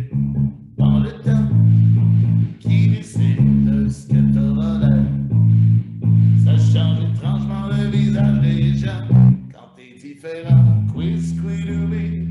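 A rock song: a man singing over electric guitar and a heavy bass line, with a brief drop in the music about ten seconds in.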